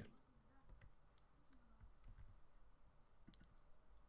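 Near silence with a few faint, scattered clicks from a computer keyboard and mouse.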